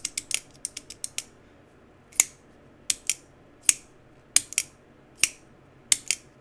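CIVIVI Vision FG folding knife being flipped open and snapped shut over and over, sharp metallic clicks of the blade deploying and locking. A quick flurry of clicks comes in the first second, then single or paired clicks about every half second to second.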